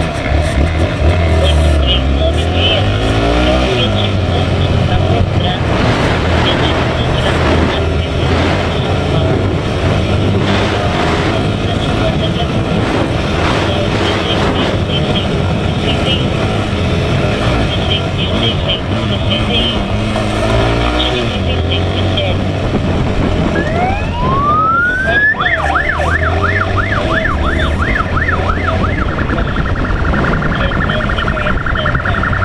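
Motorcycle engines running and revving on a street ride. About 23 seconds in, a police siren winds up in a rising wail and then switches to a fast warbling yelp.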